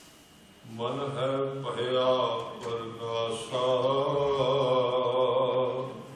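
A man chanting gurbani in long, steady sung notes into a microphone, amplified through the hall's sound system. It starts about a second in, runs in two long phrases, and fades at the end.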